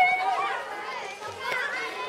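Children's voices at play: a child's high call held for about half a second at the start, then more children calling and chattering.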